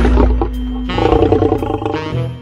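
Jazz-style saxophone background music with a loud, rough growling sound over it, rasping most strongly in the second half.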